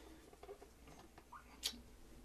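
Faint small clicks and taps of wooden flute parts being handled as a plug is pushed into the top end of a teak side-blow bass flute, with one sharper click near the end.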